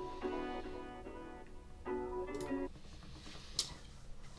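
Quiet instrumental outro music without a beat: a few soft, sustained melodic notes that stop about two and a half seconds in, followed by a single faint click near the end.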